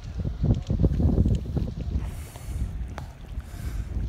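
Wind buffeting the microphone in uneven gusts on a harbour quay, with two short hisses, one about halfway through and one near the end.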